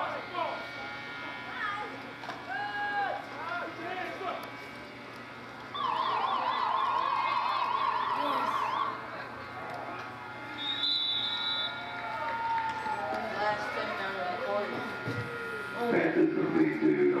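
Spectators' voices shouting and cheering at an outdoor football game. About six seconds in, a loud, rapidly warbling siren-like tone runs for about three seconds, and a short high whistle-like tone sounds a couple of seconds later.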